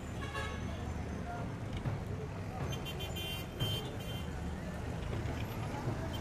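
Street traffic: vehicle engines running steadily, with voices in the background. Two short shrill tones sound, about half a second in and again around three seconds in.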